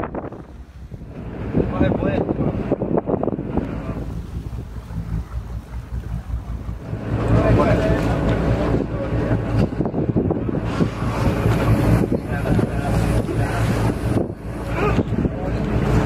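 Wind buffeting the microphone, then from about halfway a boat's engine running steadily, heard from on deck.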